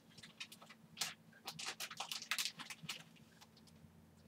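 Packaging crinkling as it is handled and opened by hand, an irregular scatter of crackles, fairly faint because it is held away from the microphone.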